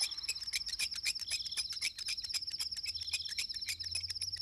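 Crickets chirping in a rapid, even pulse: a steady night-time insect chorus.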